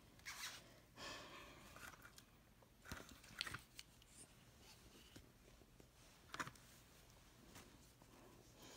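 Near silence with faint rustling and a few light clicks from toy dolls and a plastic dollhouse being handled.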